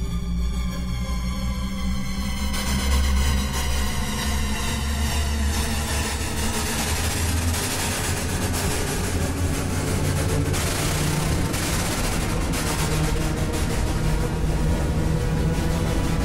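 Steinberg X-Stream spectral synthesizer playing its Megatherion preset from a keyboard: a deep, sustained low drone. Over the first several seconds, a hissing noise texture swells in above it and fills out the upper range.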